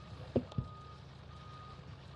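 Two knocks about a quarter second apart as a heavy metal championship belt is lifted off a table. Under them, a faint high beep repeats about once a second.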